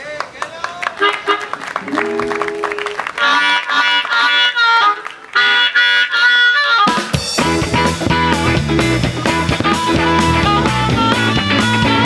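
Blues harmonica playing the intro of a live band number, with high, bending held notes. About seven seconds in, the full band comes in: electric guitars, bass and drum kit.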